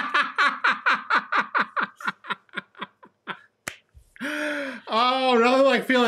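Laughter in quick 'ha-ha' pulses that slow down and fade over about three seconds, followed by a single sharp click and then a voice near the end.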